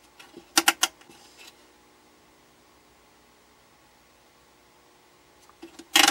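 A quick run of sharp clicks under a second in, from a selector switch on a vintage capacitor tester being turned through its positions, then only a faint steady hum. A few softer clicks come just before the end.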